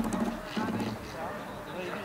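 People talking in the background, with a few short clicks near the start.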